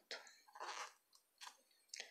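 Near silence: room tone with a few faint, short soft noises.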